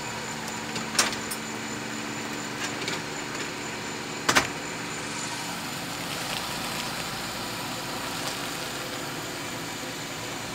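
Car engine running steadily, with a sharp knock about a second in and a louder double knock just past four seconds in.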